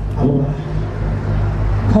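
A steady low hum, with a short fragment of a man's voice a moment after the start and his speech picking up again at the very end.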